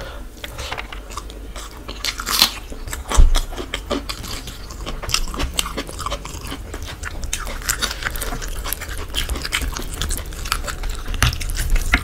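Close-miked mukbang eating sounds: chewing of rice and chicken, with wet squelches and clicks as fingers work the khichuri and gravy. A single thump comes about three seconds in.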